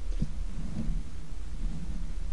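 Black bear shifting in straw bedding against a ball, giving low, irregular rumbling and rustling with a click just after the start, over a steady low hum from the den microphone.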